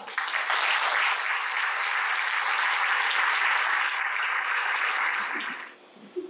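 Audience applauding at the end of a talk, starting suddenly and dying away just before the end.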